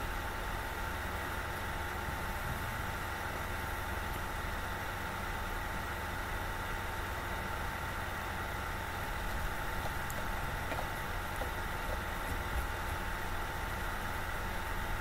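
Steady room tone: an even hum and hiss with a faint constant whine, and no distinct events.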